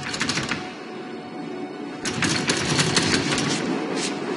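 Film soundtrack with music and two bursts of rapid rattling clicks: a short one at the start and a longer one from about two seconds in.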